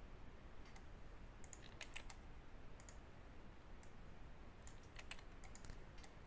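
Faint clicks from a computer keyboard and mouse as entries are typed into a web form: a few scattered key presses, with small clusters about two seconds in and near the end.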